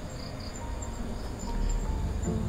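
Crickets chirping in short, evenly repeated pulses over a low rumble that swells in the second half, with faint held tones coming in about a second in.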